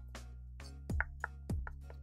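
Background music over a knife mincing garlic on a wooden cutting board, with a quick run of chops in the second half.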